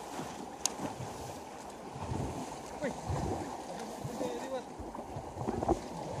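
Water splashing and churning as people wade and thrash through shallow water, with brief distant shouting voices now and then.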